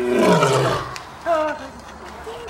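Male lion roaring: a long roar falling in pitch fades out about a second in, followed by a shorter call.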